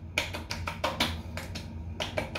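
Hands slapping and patting wet skin on the face, a quick series of light smacks, as aftershave is patted onto the cheeks.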